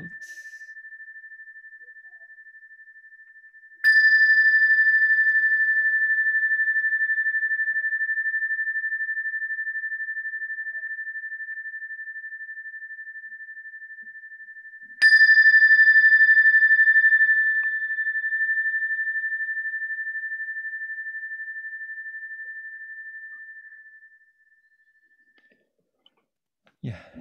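Buddhist bowl bell struck with a mallet three times slowly as a meditation bell, ringing one clear high tone. The first ring is already fading, two more strikes come about four and fifteen seconds in, each ringing on and dying away slowly, and the last fades out near the end.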